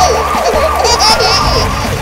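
Cartoon ambulance siren sound effect: a quick up-and-down wail that repeats about three times a second.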